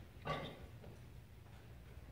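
Quiet room tone with one brief soft noise about a quarter second in.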